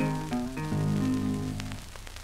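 Closing piano and guitar chords of a 78 rpm shellac blues record, fading and stopping just before the end. They leave only the record's surface hiss and crackle.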